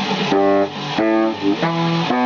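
Yamaha YBS-62 baritone saxophone playing a quick line of changing notes over a rock backing track with electric guitar. Noisy hits sound at the start and again about a second in.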